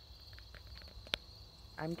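A steady, high-pitched chorus of insects, with one sharp click just past the middle.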